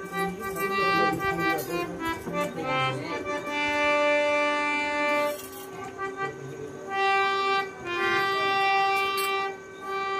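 Harmonium playing long sustained chords over a steady drone note, with a shifting melody line in the first few seconds, as accompaniment to a devotional bhajan.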